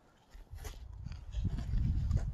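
Low rumbling handling noise on the camera microphone as the camera is swung around, starting about half a second in and growing louder, with a few faint taps.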